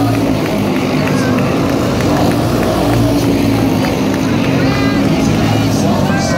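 Junior sprint car engines running steadily as the cars circle the dirt oval at the end of the heat.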